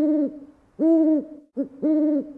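Owl hooting: a series of clear, pitched hoots repeating about once a second, some short and some longer.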